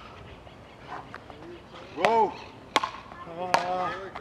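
Frescoball rally: paddles striking the ball in sharp single hits about 0.8 s apart, starting about two seconds in. Short shouts from the players come with the hits.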